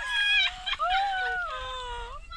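Children squealing in play: long, high-pitched wavering cries that slide up and down, one held near the end.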